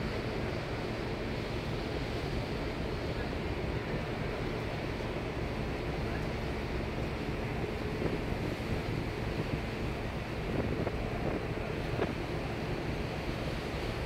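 Wind buffeting the microphone over the steady rush of sea water along a moving ferry's hull, with a faint low hum from the ship. It swells a little in the second half.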